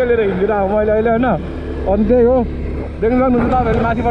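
A voice singing in drawn-out, wavering phrases over the steady low hum of a motorcycle underway.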